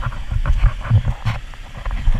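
Inner tube sliding down a wet inflatable vinyl water slide: a low rumble with irregular thumps as the tube and rider bump over the slide.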